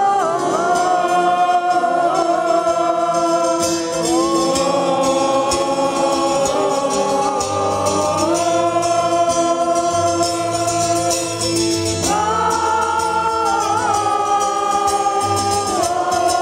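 Live band music: a slow melody of long held notes, each held for a few seconds before moving to the next, over strummed plucked strings.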